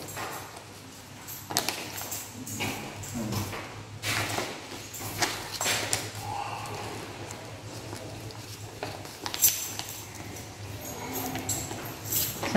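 Sheets of origami paper being folded and creased by hand, giving irregular rustles and crinkles, with a faint steady hum underneath.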